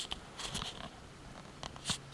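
Faint handling noises, with a few soft rustles about half a second in and one sharp click near the end.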